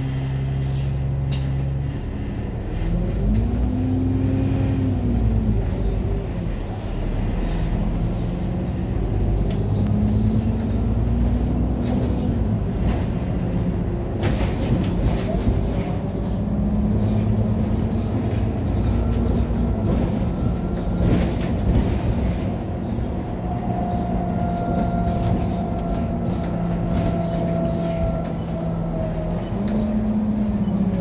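A bus engine and drivetrain heard from inside the cabin: a steady low rumble with a whine that rises and falls several times as the bus speeds up and slows. A higher tone joins in for several seconds near the end, and there are scattered knocks and rattles.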